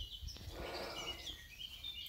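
Birds chirping and twittering faintly: short high calls scattered through the moment, over a low steady background rumble.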